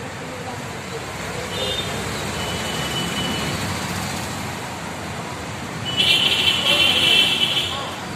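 Steady street-traffic noise with a faint voice, and about six seconds in a loud, high-pitched ringing that lasts nearly two seconds.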